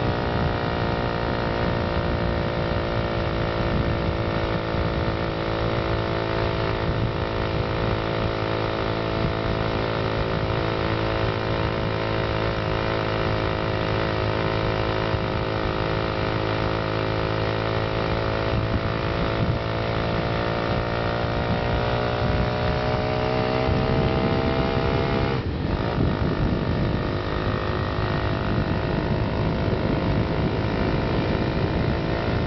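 Small four-stroke engine of a motorized bicycle with a shift kit running under way, its note climbing slowly as it gains revs, then dropping suddenly near the end.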